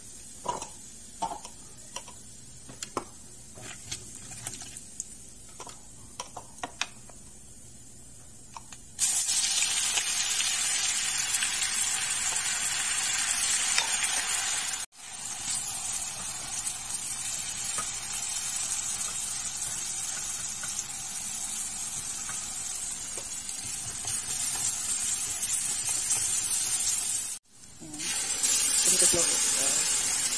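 Hot oil sizzling and frying in an aluminium kadai. For the first nine seconds the sizzle is soft, with a spoon clicking against the pan now and then. Then it abruptly turns loud and dense as a paste fries in the oil, with two momentary breaks.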